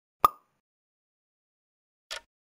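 A single short, sharp pop sound effect about a quarter of a second in, dying away quickly.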